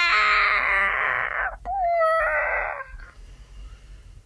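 A human voice performing wordless sound poetry: a long, breathy, whimper-like vocal sound falling in pitch, a brief break, then a short pitched note and another breathy cry. It trails off after about three seconds.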